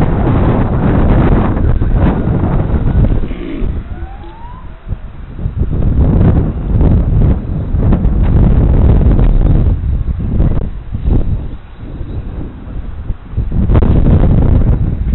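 Wind buffeting an outdoor microphone in loud, uneven gusts, with a faint rising whine from the brushless electric motors of 1/10-scale RC touring cars on the track.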